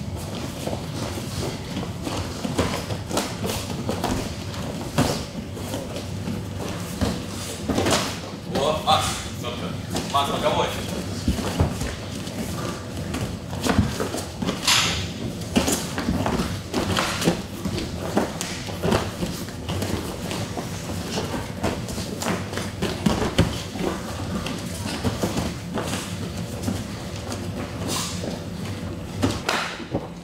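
Scattered thuds and slaps of gloved punches and kicks and bare feet on the cage mat during an MMA bout, with indistinct voices in between.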